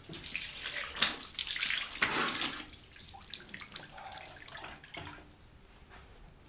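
Water running and splashing, as from a tap into a basin, loudest in the first half and then dying away, with a sharp knock about a second in and another a second later.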